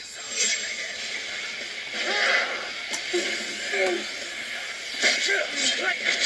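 Animated fight-scene soundtrack: a steady rushing noise of energy blasts and sword strikes, with voices or creature cries that bend up and down in pitch over it.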